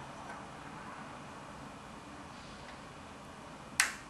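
A single sharp plastic click near the end from the red pull-out dispensing tap of a 5-litre Pelenbacher lager mini-keg being drawn out of the keg, over faint background noise.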